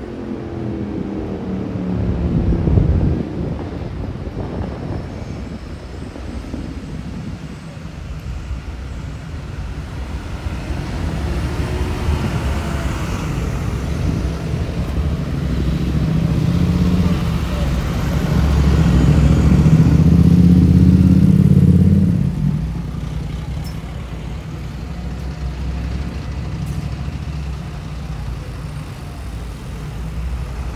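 Town street traffic: a motor vehicle's engine rumble builds to its loudest about two-thirds of the way through, then drops away suddenly as it passes.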